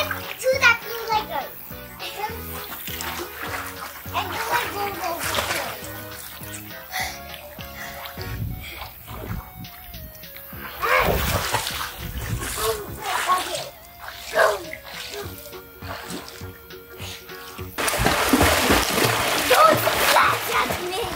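Children's voices over background music, with water splashing starting near the end.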